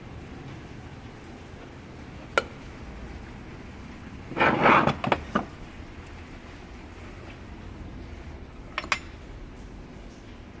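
Small metal engine parts knocking and clinking on a workbench while being handled: a single sharp click a couple of seconds in, a louder clatter of several knocks around the middle, and two quick clicks near the end.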